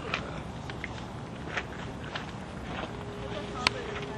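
Outdoor background noise with faint distant voices, a sharp click near the end, and a thin steady hum that starts about three seconds in.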